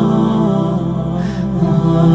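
Nasheed music: several voices holding long, slowly changing notes in harmony, with no words.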